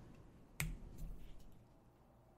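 A single short, sharp click about half a second in, over quiet room tone.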